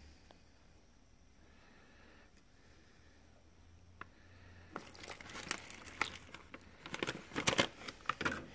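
Thin plastic packaging crinkling as a water pouch is squeezed and emptied into a self-heating meal bag: a run of irregular sharp crackles starting about five seconds in, after near silence.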